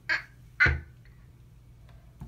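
A baby making two short squawking vocal sounds, about half a second apart.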